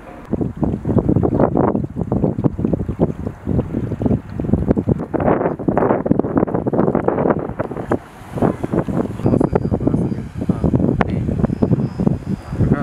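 Wind buffeting the microphone: loud, uneven noise that surges and drops in irregular gusts, with no steady tone.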